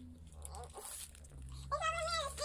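Fairly quiet room sound, then near the end a high, drawn-out vocal sound from a young child, gliding in pitch.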